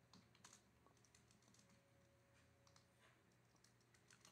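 Near silence with a few faint, scattered computer keyboard clicks.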